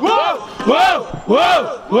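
Rhythmic shouted chant of "uou!": three calls, about one every 0.7 s, each rising and then falling in pitch. It is a rap-battle hype chant between rounds.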